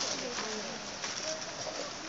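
Outdoor crowd ambience: a steady hiss with faint, scattered voices in the distance.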